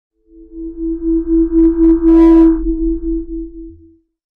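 Synthesized intro sting for an animated logo: a steady electronic tone over a deep drone, pulsing about three times a second, with a short whoosh about two seconds in, fading out just before the end.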